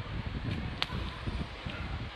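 Low, uneven rumble on a handheld phone's microphone, with two sharp clicks about half a second and just under a second in.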